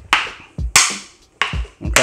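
Kali training sticks striking each other four times in a partner drill, sharp clacks spaced about half a second apart, the first two ringing briefly.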